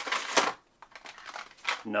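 Packaging crinkling and rustling as small packaged items are picked up and handled, in two spells with a short pause between, followed near the end by a spoken word.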